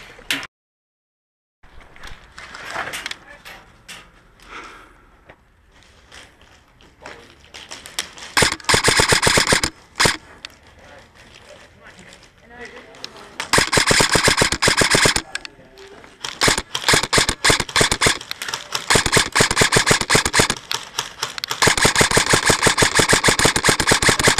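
Airsoft electric guns firing full-auto: bursts of rapid, evenly spaced shots, a short one about a third of the way in, then longer strings of several seconds each that run nearly unbroken in the second half.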